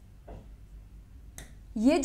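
A single sharp tap of a pen on an interactive touchscreen whiteboard, about one and a half seconds in, against quiet room tone; a woman starts speaking just after.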